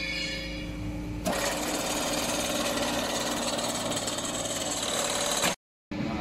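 Industrial bag-closing sewing machine stitching shut a woven sack. It starts abruptly about a second in and runs steadily with a fast even rhythm until it cuts off suddenly near the end, over the steady hum of the line's motor.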